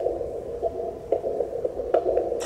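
A steady, eerie droning hum from an animated short's haunting soundtrack, starting suddenly, with a few soft clicks through it.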